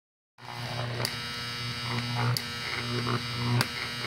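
Fractal (Lichtenberg) wood burning: high-voltage current arcing and burning through a salt-water-soaked wooden board between two electrodes, giving a steady electrical hum and buzz. Three sharp crackles of arcing pop out, about a second apart.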